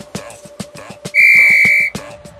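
An interval timer's single long electronic beep, a steady high tone lasting under a second that starts about a second in and cuts off sharply, signalling the end of the rest and the start of the next work set. Background music with a steady beat runs underneath.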